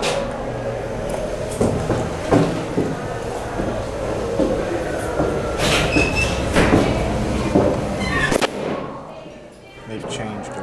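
Indistinct voices over a steady low rumble, with several sharp knocks; the rumble cuts out suddenly near the end.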